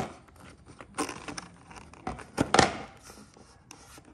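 Handling of a plastic cable connector and plastic bags in a cardboard box: scattered rustles and sharp clicks, loudest about two and a half seconds in.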